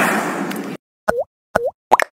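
A noisy wash of sound fades and cuts off suddenly under a second in. Then come three quick cartoon 'bloop' pop sound effects about half a second apart, each dipping in pitch and springing back up, from an animated YouTube subscribe outro.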